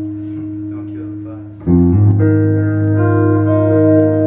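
A steady amplified drone holds, then about a second and a half in, electric guitar and lap steel guitar come in loudly with sustained, ringing chords.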